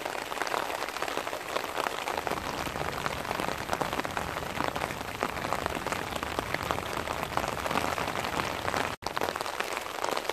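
Heavy rain pattering steadily, mixed with the rush of floodwater running fast down a concrete stormwater channel. The sound cuts out for an instant just before the end.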